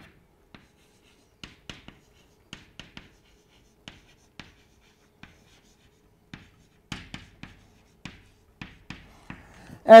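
Chalk writing on a chalkboard: a string of short, sharp taps and brief scratches as the words are written out, coming a little faster near the end.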